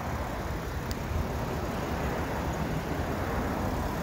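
Steady low rumble of motor vehicle noise, with a faint click about a second in.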